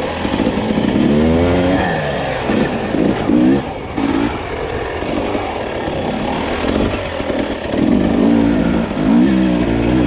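Dirt bike engine revving in repeated bursts of throttle, its pitch rising with each surge: about a second in, twice around three seconds, and again from about eight seconds on.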